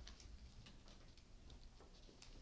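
Near silence: faint room tone with scattered soft clicks and rustles of people getting up from their desks and moving about.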